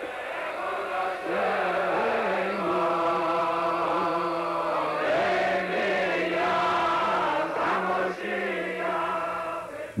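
Background music of slow chanted singing, with long held notes moving slowly in pitch.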